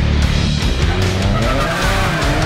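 Can-Am Maverick X3's turbocharged three-cylinder engine revving, its pitch climbing from about a third of the way in and dropping back near the end, with tyres skidding on asphalt. Heavy-metal music plays over it.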